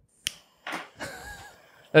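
A single sharp click, followed by quiet voice sounds from the hosts at their microphones.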